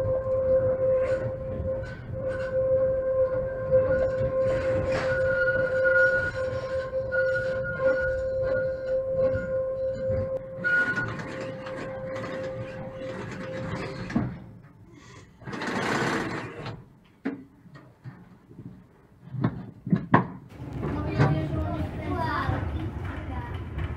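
Konstal 803N tram running, with a long steady whine through the first two-thirds. Then it goes quieter, with a burst of hiss and a few sharp clicks near the end.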